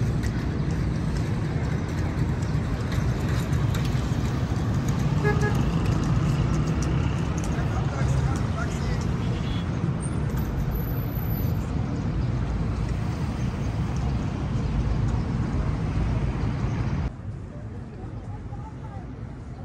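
Steady city traffic noise from cars driving past on the road, with a short car-horn toot about five seconds in. The noise drops off sharply near the end.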